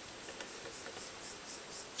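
Quiet room tone with faint rustling and a few light clicks from a black telephone-type cable being handled in the hands.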